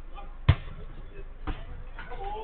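A football struck twice on an artificial-turf pitch: a sharp, loud thud about half a second in and a softer one a second later.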